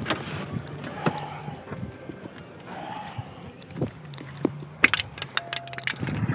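Handling noise from a body-worn camera as an officer climbs out of a patrol SUV: rustling and a run of sharp clicks and knocks from the door and his gear, thickest in the last two seconds, over the low hum of the idling engine. A short steady tone sounds just before the end.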